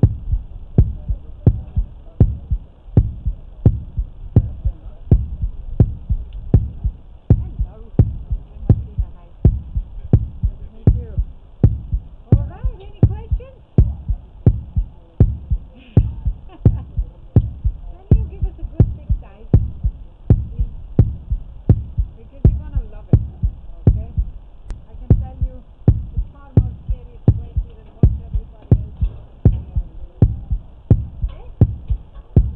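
A steady, low thudding beat, about two beats a second and evenly spaced, as in a heartbeat suspense track, with faint voices underneath.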